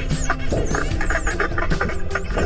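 Background music with low held notes, and over it the high whistles of spinner dolphins underwater: several thin calls gliding up and down, a few sweeping down quickly.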